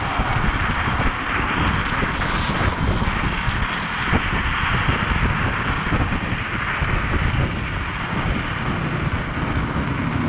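Steady rush of wind over the microphone of a rider at speed on an electric scooter, with no clear engine note.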